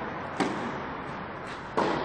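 Tennis racket striking the ball on a serve, a sharp crack about half a second in. About a second and a half later comes a second, louder impact.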